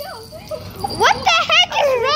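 A child's high-pitched voice without clear words, quieter at first and loud from about halfway through.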